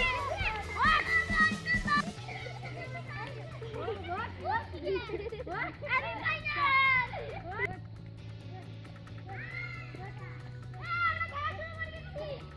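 Children shouting and calling out as they play, in bursts at the start, in the middle and near the end, over background music with low held notes.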